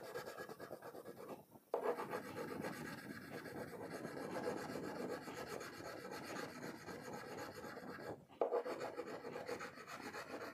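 Wax crayon rubbing on paper as a picture is coloured in: a faint, steady scratchy rasp of repeated strokes in one direction, broken by two short pauses, one about a second and a half in and one a little after eight seconds.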